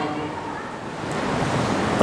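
A steady rushing hiss like wind on a microphone, growing a little louder toward the end.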